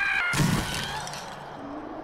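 Cartoon crash sound effect from the animated film: Scrat, a squirrel-like creature, smashes through ice after a long fall, with one heavy impact about half a second in and a crumbling noise that dies away over the next second.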